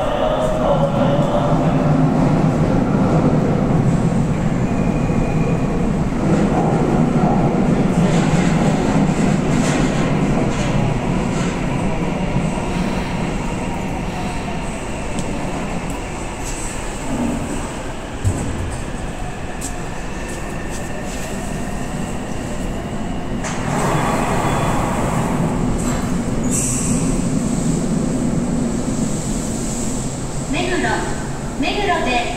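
Tokyu Meguro Line electric commuter train moving along the station platform, with a steady rumble of wheels on rail and running gear. The rumble eases in the middle and builds again later, with a sharp click midway and a short high squeal near the end.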